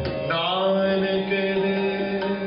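Sikh Gurbani kirtan: a man sings, sliding up into one long held note about half a second in, over bowed string instruments. The tabla mostly drops out for these seconds.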